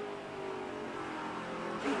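NASCAR Camping World Truck Series race truck's V8 engine running at speed, picked up by an onboard camera microphone, holding a steady pitch.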